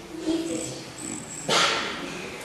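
A child's voice making short animal-like yelps and cries, with a loud shout-like burst about one and a half seconds in.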